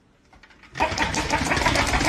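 A small motor switched on suddenly about three-quarters of a second in, then running loud and steady with a rapid rattle.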